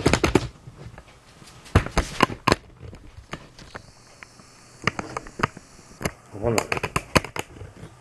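A shotgun being handled, a Chinese-made gun: several quick clusters of sharp clicks and knocks.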